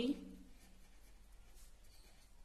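A felt-tip pen writing on paper in faint, quick scratchy strokes. A spoken word trails off just at the start.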